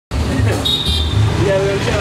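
Busy roadside street noise: a steady low traffic rumble with voices in the background, and a brief high-pitched tone a little after half a second in.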